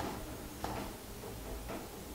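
A screwdriver tip turning the brass adjusting screw of a broken-open trimpot, making a few faint small clicks as the screw drives the exposed internal gear.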